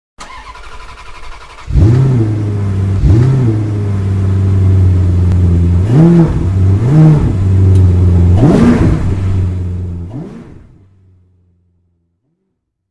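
An engine catching about two seconds in, then revved in short blips several times over a steady idle, fading out near the end.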